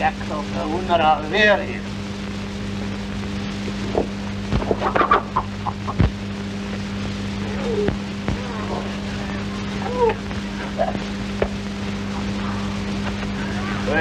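A chicken clucking in short, scattered calls over the steady hum of an old film soundtrack, with a few sharp knocks, the clearest about six seconds in.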